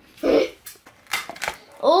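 A plate set down on a table and a metal fork against it: a few sharp clicks and knocks in the middle, after a short vocal sound near the start.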